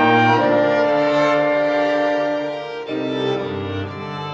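Chamber ensemble of violin, viola and cello playing sustained chords in a contemporary classical piece. The harmony shifts about a third of a second in and again near three seconds, with the music easing slightly softer toward the end.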